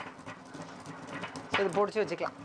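Stone pestle pounding and grinding spices in a granite mortar: a run of quick, irregular knocks, with a voice briefly near the end.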